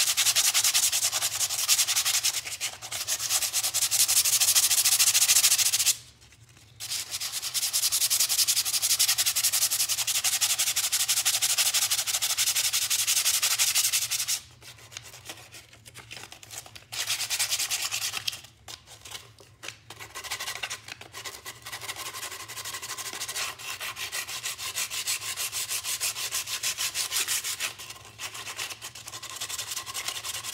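Hand sanding the saw-cut edges of a wooden board with a square of 100-grit sandpaper to knock off splinters: fast back-and-forth rasping strokes. There are short pauses about six seconds in and around the middle, and lighter strokes in the last third.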